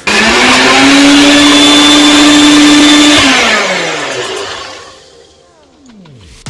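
Single-serve bullet blender running at full speed, blending rose petals in pomegranate juice. About three seconds in it is switched off and the motor spins down, its pitch falling as it fades.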